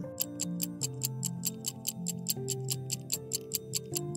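Stopwatch ticking sound effect for a quiz countdown timer, rapid and even at about five or six ticks a second, over soft background music with sustained notes.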